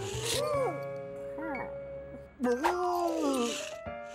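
Cartoon background music with a cartoon dachshund's short rising-and-falling vocal cries; the loudest is a longer falling cry about two and a half seconds in.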